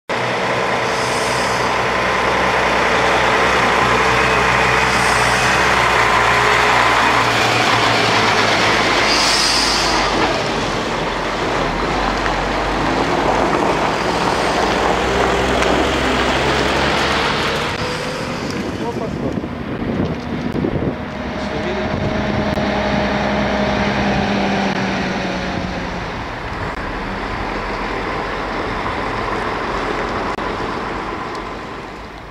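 Heavy diesel truck engine running close by as a loaded dump truck drives past, loudest in the first ten seconds. Engine noise from site machinery continues after that, with a slow rise and fall in pitch in the second half.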